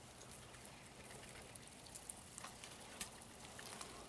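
Faint, scattered ticks and patter of Pekin ducks' bills probing damp soil and leaf litter for worms.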